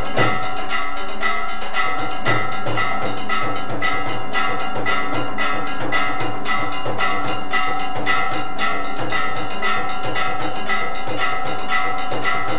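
Temple aarti bells ringing on without a break, with quick, steady drum and percussion strikes, as played during a Hindu aarti.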